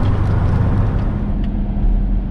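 Steady low engine and road rumble heard from inside a vehicle cab, with a steady hum setting in about a second in.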